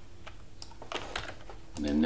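A few scattered computer keyboard keystrokes, with a quick cluster of them about a second in, as a command is entered. A voice starts speaking near the end.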